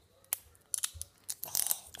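Crinkly plastic wrapping of a toy surprise ball being handled: a couple of sharp clicks, then a run of crackles and clicks in the second half.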